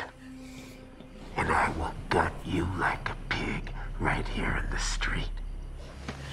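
Whispered speech starting about a second and a half in, over a low drone that grows louder and stops just before the end.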